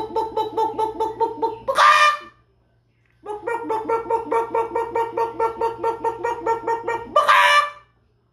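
A man imitating a chicken through cupped hands: quick, even clucks, about five a second, each run ending in a loud, higher squawk. It happens twice, with a short pause between.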